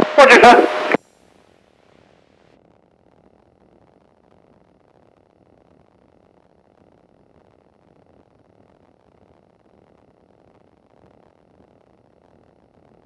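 A radio voice call cuts off about a second in, leaving near silence with only a faint low hiss.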